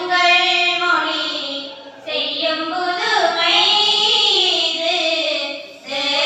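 Young female voices singing a slow melody together, in long held phrases with a short break about two seconds in.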